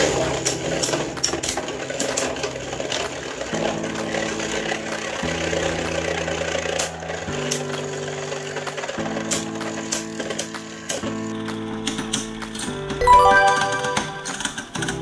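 Two Beyblade Burst tops, Prominence Valkyrie and another Valkyrie, spinning and clashing in a clear plastic stadium: a rattling whir with repeated sharp clicks as they strike each other and the wall. Background music with held chords plays throughout, and a short chiming jingle sounds near the end.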